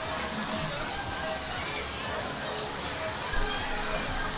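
Music and talking mixed together, with no single sound standing out.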